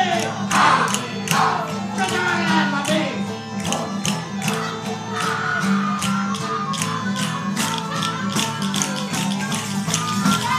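Live folk band playing: a tambourine beating a steady quick rhythm over acoustic guitar, with a wind instrument carrying the melody in held notes.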